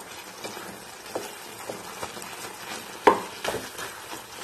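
Wooden spatula stirring and mashing cooked tapioca masala in a pan: soft scrapes and scattered short knocks of wood against the pan, the loudest knock about three seconds in, followed by a few quicker ones.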